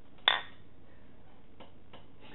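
A single sharp clink of a ceramic mug against a ceramic water pitcher about a quarter second in, ringing briefly. A couple of faint ticks follow.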